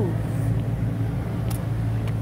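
A steady low hum, as of a motor running, with a single click about one and a half seconds in.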